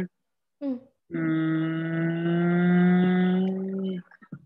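A person holding a long hesitating hum, a drawn-out 'mmm' kept for nearly three seconds at a steady pitch that rises slightly, after a short vocal sound about half a second in.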